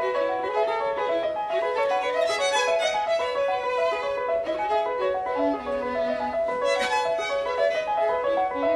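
Live classical violin playing a quick, busy melody with many notes a second, accompanied by a grand piano.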